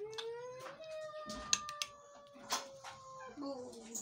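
A cat giving one long drawn-out meow that rises in pitch at first and then slowly falls over about three and a half seconds. A few sharp clinks, like a spoon against the metal pot, sound over it.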